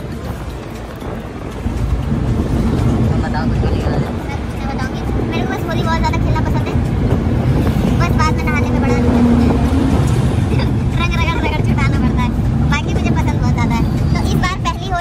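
Low rumble of road and engine noise inside a moving car's cabin, running steadily, with voices talking over it.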